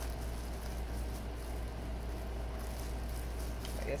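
Faint chewing of dried magic mushrooms over a steady low hum. A voice starts at the very end.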